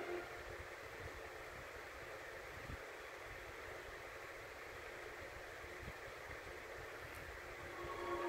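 Faint, steady hiss from a VHS tape's silent gap between previews, played through a TV speaker and picked up in the room.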